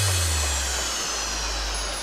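Electronic dance music breakdown with the beat dropped out: a bass tone slides down and holds low under a wash of whooshing noise that slowly falls in pitch and fades.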